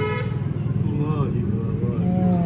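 Steady low drone of an engine running, with faint voices over it about a second in.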